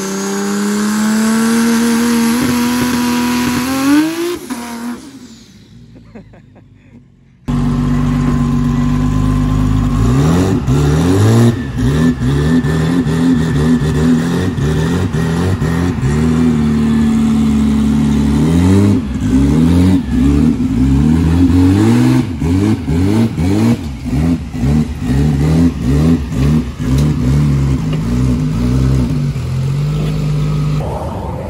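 A drag-race Camaro's engine revving: first a rising pull, then, after a short break, running loud and low with a quick series of short throttle blips as the car creeps up onto a car trailer.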